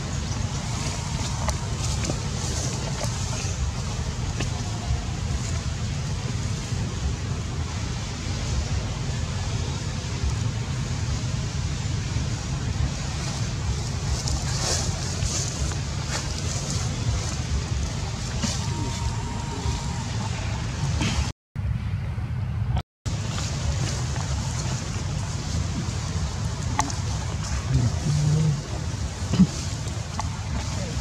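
Steady low rumble of outdoor background noise with faint higher sounds above it. The sound cuts out twice, briefly, a little past two-thirds of the way through.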